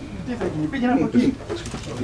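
Men's voices talking, with the words not made out: speech only.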